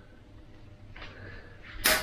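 Cutting pliers snipping through a steel coat-hanger wire: quiet handling, then one sharp snap near the end as the wire is cut through.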